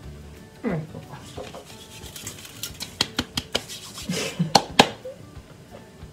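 Coarse salt grains sprinkled by hand onto focaccia dough in a metal baking tray, ticking as they land in a scatter of light clicks, the loudest about four and a half seconds in. A short sliding voice-like sound comes near the start.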